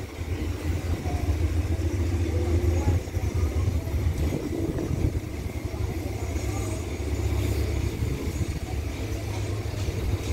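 Passenger train moving slowly out of the station, with a steady low diesel rumble from the Hitachi 4519 diesel-electric locomotive under power as the carriages roll by.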